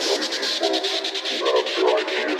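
Hard and uplifting trance music in a DJ mix with the kick drum and bass dropped out, leaving choppy synth chords over a fast, steady hi-hat pattern.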